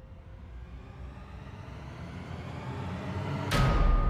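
Title-sequence sound effects: a rushing swell that grows steadily louder for about three and a half seconds, then a sudden deep bass hit with a held tone near the end.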